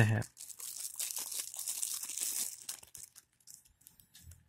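Clear plastic wrapping crinkling as it is pulled off a small plastic digital clock, a dense crackle for about three seconds that dies away near the end.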